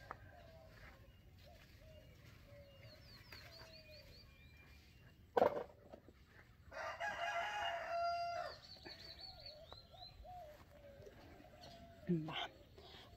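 A rooster crowing once, one long crow of nearly two seconds about seven seconds in, just after a single sharp knock. Faint chirping of small birds comes and goes around it.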